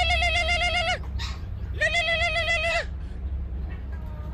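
Phone ringing with a goat-bleat ringtone: two bleats, each about a second long at a steady, slightly wavering pitch, the second starting just under a second after the first ends.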